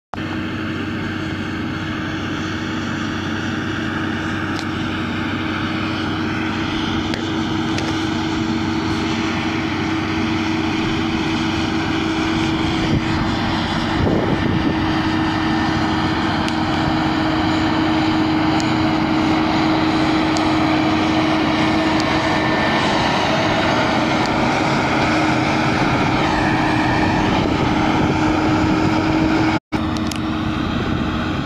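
John Deere 7530 tractor's engine running steadily under load as it pulls a cultivator through the soil. It is a steady drone that grows slightly louder as the tractor comes nearer, and it breaks off briefly near the end.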